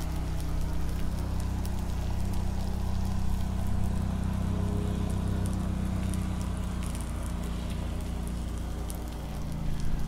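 Loud boat motor running, a steady low drone that dips slightly near the end.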